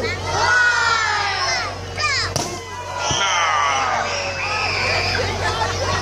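A crowd of children shouting and cheering, many high voices overlapping at once, over a steady low hum.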